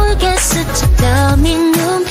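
A synth-pop song with an AI-generated female singing voice. The voice moves through a short phrase, then holds one long note in the second half over a heavy bass line.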